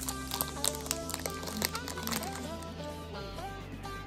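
Background music: a light melodic tune of pitched notes.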